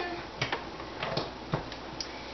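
A few light, sharp clicks and knocks as a blender's power cord and plug are handled and pushed into a wall outlet.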